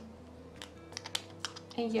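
A few light, sharp clicks and taps as a glass nail file and its hard plastic case are handled, the file being lifted out of the case.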